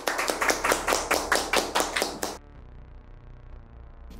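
Hands clapping quickly in a small room, about six claps a second, stopping abruptly about two and a half seconds in. After that only a faint low background remains.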